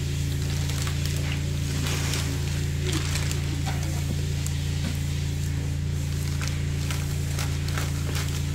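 A steady low hum runs throughout, with faint soft taps and rustles of hands pressing raw catfish fillets into a tray of cornmeal breading.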